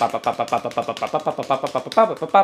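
A man vocalizing the riff's rhythm as a rapid, evenly spaced stream of short sung syllables, constant sixteenth notes with no change in subdivision.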